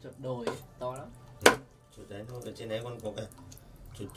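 A heavy knife chopping raw meat on a thick round wooden chopping block: one loud chop about a second and a half in, with lighter knife taps. A person talks in between the chops.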